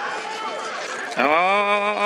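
Murmur of background voices, then about a second in a man's voice breaks into one long, held call.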